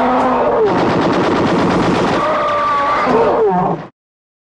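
Rapid machine-gun fire from a film soundtrack, with a woman's high wailing cries over it that twice fall away in pitch. Everything cuts off suddenly just before the end.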